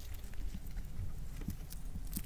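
Syrian hamster nibbling and chewing fresh grass right next to the microphone: small, irregular crunchy clicks.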